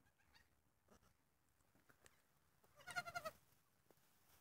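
A day-old pygmy goat kid bleats once about three seconds in: a short, high, quavering cry. Faint small clicks come before it.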